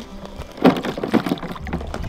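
Broken ice and icy water in a plastic water bowl knocking and sloshing as the chunks are handled and lifted out, with one sharp knock about two-thirds of a second in and a few lighter clicks after it.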